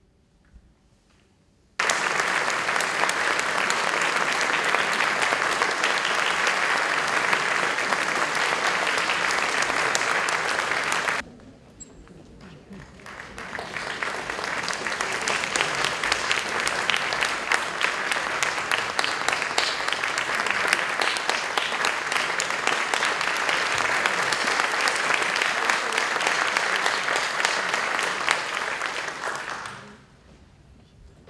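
Audience applauding, a dense steady clapping. It breaks off suddenly about a third of the way in and swells back up a couple of seconds later.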